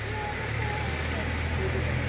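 Faint voices of people talking at a distance over a steady low rumble.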